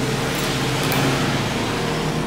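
A steady mechanical hum at a constant level.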